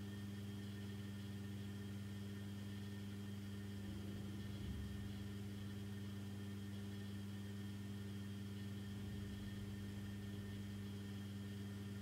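Faint steady electrical hum with a low background hiss: studio room tone.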